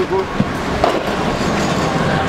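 A small canal tour boat's engine running with a steady low hum, under the chatter of a crowd walking by. A couple of short clicks come in the first second.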